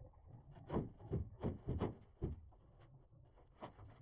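Cable being dragged through a ceiling cavity, rubbing and knocking against the metal framing: a quick run of about five knocks and scrapes in the first half, then one more near the end.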